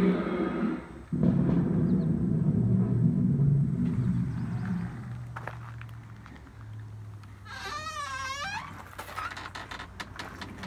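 A low, rough rumbling growl for the first few seconds, broken briefly about a second in, dying away by about five seconds. Later a weathered wooden outhouse door creaks open on its hinges, a short wavering squeal.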